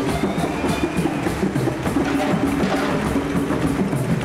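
Live marimbas and hand percussion playing together in a quick, steady groove of short, repeated wooden-bar notes.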